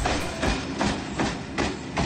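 Red Rattler electric train car C3708 rolling along the rails with a heavy, regular knock, roughly two a second, from a very flat wheel.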